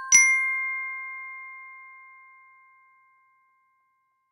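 A bright chime note is struck just after the start, the highest of a rising three-note audio-logo jingle. It rings on together with the two lower notes struck just before it, and all fade away smoothly, gone by about three seconds in.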